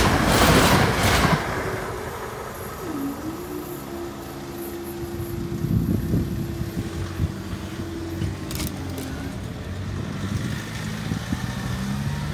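A Transport for Wales Class 175 diesel multiple unit passes over the level crossing, its rumble dying away within the first second or so. About three seconds in, a steady hum starts and runs for about five seconds as the crossing barriers rise. Road vehicles then start to move over the crossing.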